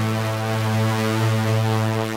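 Reveal Sound Spire software synthesizer playing a sequence preset from the EDM Essentials Vol.3 expansion: a bright, buzzy synth tone holding one low note with many overtones.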